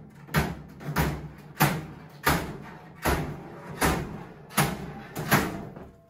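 Steel pry bar levering apart the thin sheet-steel body of a gun safe along saw cuts, giving a series of about eight sharp metallic clanks, roughly one every 0.7 seconds.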